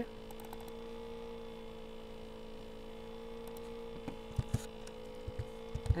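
Steady electrical hum on the recording, with a few soft clicks in the last two seconds as the equation is typed.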